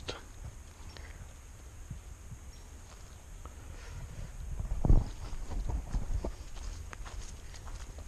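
Footsteps on dry leaf litter and dirt along a forest trail, irregular and soft, over a steady low rumble on the handheld camera's microphone. A louder knock comes about five seconds in.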